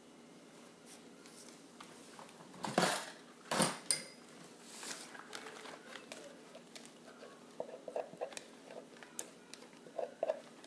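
Plastic soapmaking cup and utensils handled and set down on a tabletop: two loud knocks close together about three seconds in, then light taps and clicks near the end.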